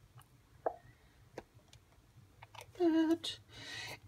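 A handful of faint, sharp plastic clicks and taps as glitter is tipped into a small plastic cup of acrylic paint and stirred in with a plastic stir stick. About three seconds in, a short vocal sound from the woman.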